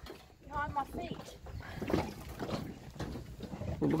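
People talking faintly, with a low rumble and scattered low bumps underneath.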